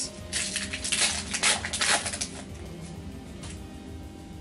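Foil wrapper of a Pokémon card booster pack crinkling and tearing as it is opened by hand, busiest in the first two seconds, then quieter handling. Soft background music runs underneath.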